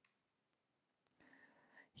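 Near silence: room tone, with two faint clicks, one at the start and one about a second in.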